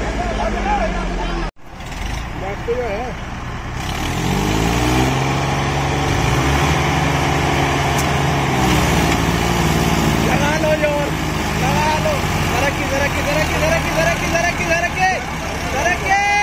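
Two diesel tractors, a Massey Ferguson 245 and a Mahindra Arjun chained together, running hard under heavy load, their pitch rising and falling as they are revved to pull a loaded sugarcane trolley through soft ground where the tyres slip. The sound drops out for a moment near the start, and men shout over the engines in the second half.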